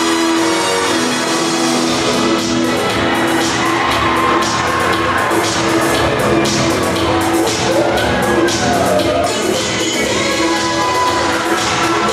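Dance music played loud over a sound system in a large hall, with its bass and a steady beat coming in about two seconds in.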